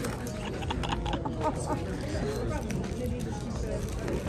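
Background chatter of many diners' voices in a restaurant, with light crinkling of a plastic-wrapped package being handled.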